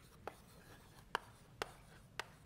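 Chalk writing on a blackboard, faint, with a few sharp taps as the chalk strikes the board.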